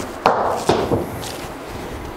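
A golf ball from a seven-iron shot thudding into an indoor simulator's impact screen: two dull knocks about half a second apart, each dying away quickly, with a fainter one after.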